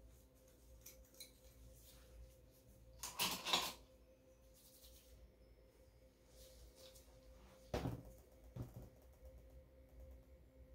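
Quiet room with a faint steady hum, broken by a short burst of handling noise about three seconds in and two soft knocks near the end: painting tools and materials being moved about on a work table.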